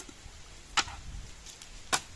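Two sharp clicks a little over a second apart from a small round metal pellet tin being handled: its lid coming off and the tin set down on a wooden tabletop.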